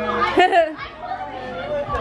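Only voices: several people chatting close by.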